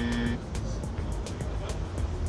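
A buzzing wrong-answer sound effect that cuts off about a third of a second in, followed by background music with a steady beat.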